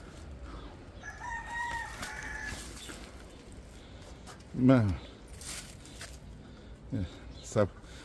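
A rooster crowing once: a single drawn-out call of about a second and a half, starting about a second in.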